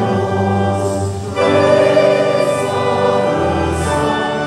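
Music: a choir singing with organ accompaniment, growing louder about a second and a half in.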